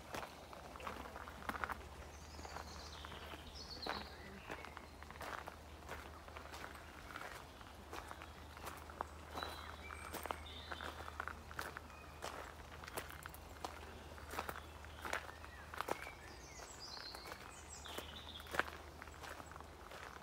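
Footsteps on a gravel path, irregular crunching steps of someone walking, with a few high bird chirps now and then.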